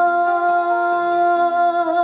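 A woman singing a slow ballad into a handheld microphone, holding one long steady note that wavers slightly near the end, over a soft backing track.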